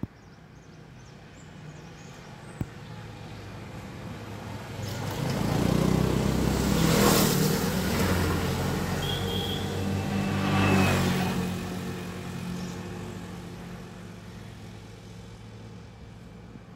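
A motor vehicle passing along the road: its engine and tyre noise build up, peak with two surges of tyre noise about seven and eleven seconds in, and fade away.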